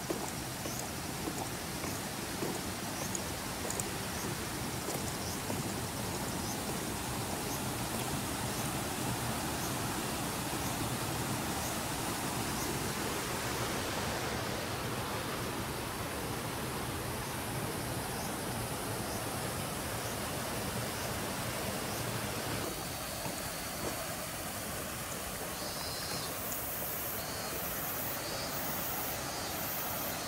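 Steady rushing noise of flowing floodwater, its tone shifting a couple of times along the way.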